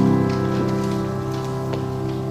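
A grand piano chord ringing on and slowly fading: one of the repeated ostinato chords on which the piece is built.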